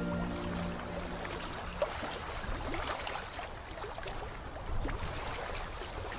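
Background music fading out over the first second or two, leaving a low, even wash of noise with scattered faint ticks.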